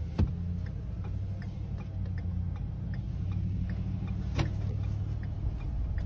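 A car running with a steady low rumble, with a light regular ticking of two or three ticks a second. Two sharp clicks stand out, one just after the start and one about four and a half seconds in.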